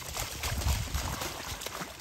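A Doberman running through shallow flood-irrigation water, its feet splashing in an uneven run of splashes.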